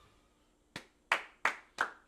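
Hands clapping four times, about three claps a second, starting about three-quarters of a second in.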